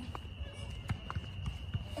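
Footsteps of people walking outdoors, a handful of scattered knocks over a low rumble, with a steady faint high tone underneath.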